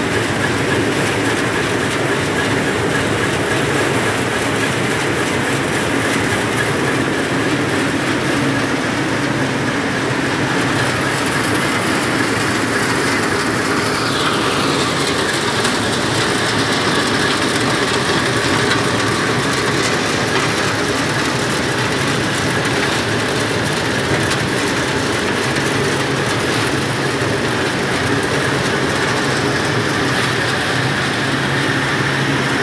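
Turmeric grinding machine running with a steady, loud mechanical hum and rattle as dried turmeric fingers are fed into its hopper and ground.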